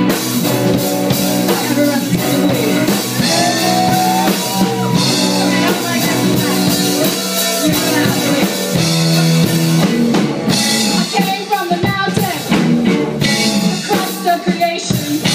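Live rock band playing loud and continuous: drum kit, electric bass and electric guitar, with a woman singing over them.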